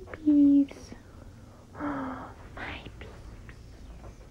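A person's voice making short, high wordless sounds and breathy whispers: a loud held note just after the start, a shorter quieter one about two seconds in, then a breathy whisper.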